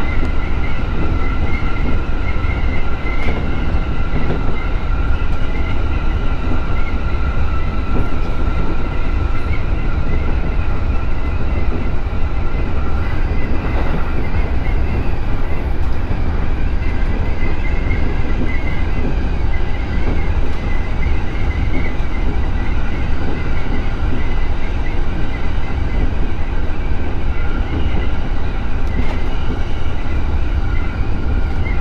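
E231-series electric commuter train running at speed, heard from inside the driver's cab: a steady low rumble of wheels on the rails with a constant high whine above it.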